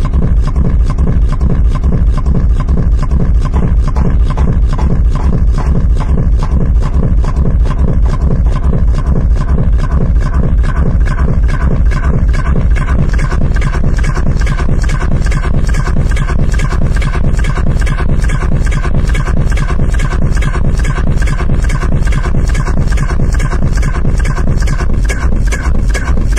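Techno DJ mix: a steady, driving kick-drum beat under layered electronic synth sounds, with a repeating synth pattern coming up stronger about ten seconds in.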